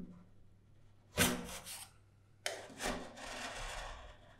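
Metal spatula scraping a frozen ice-cream sheet off a cold steel plate, rolling it into an ice-cream roll, in two rasping strokes, the second longer.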